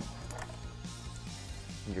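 A few light clicks of plastic wiring-harness connectors being handled and unplugged, over soft background music with a steady low hum.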